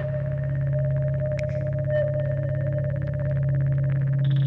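A steady electronic drone from the film's soundtrack: a low hum with a higher tone held above it, with a couple of faint ticks.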